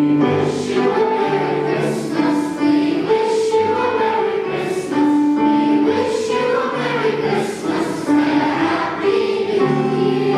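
Children's choir singing, with several held notes of about a second each.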